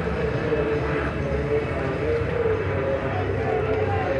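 A steady low engine rumble with a slightly wavering hum above it, and a faint voice in the background.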